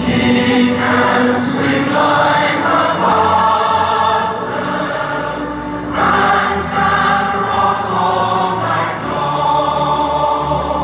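Choir singing a mock national anthem in slow, held phrases, with the lines 'He can swing like a bastard, and can rock all night long'; a new phrase begins about six seconds in.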